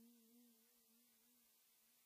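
Near silence: the faint tail of a held sung note, wavering slightly, fades away over the first second and a half.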